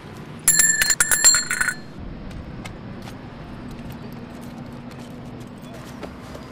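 A small metal bell rung in a quick trill of strikes lasting about a second, starting half a second in, with bright ringing tones.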